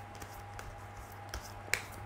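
A tarot deck being handled and shuffled in the hands: a few scattered sharp clicks and snaps of the cards, the sharpest near the end, over a steady low hum.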